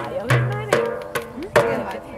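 Hand-held frame drum with a painted hide head, struck about five times with a deep boom on each beat.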